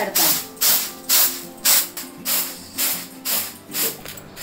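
Coarsely ground horse gram being winnowed in a woven bamboo winnowing basket (soop). The grains rattle and swish against the bamboo in regular tossing strokes, about two a second.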